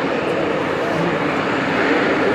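Jet airliner engines running at taxi power across the apron, a steady rushing noise, with people's voices chattering in the background.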